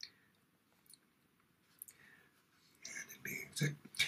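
Near silence for the first three seconds, with only a few faint small clicks. Then a man's quiet murmuring voice comes in near the end.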